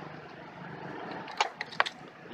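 A quick run of about five sharp clicks about a second and a half in, a switch being worked as the add-on battery voltmeter display comes on, over a low steady hum.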